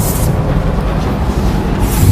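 Chalk scratching on a blackboard in two short strokes, one at the start and one near the end, over a loud, steady low rumble.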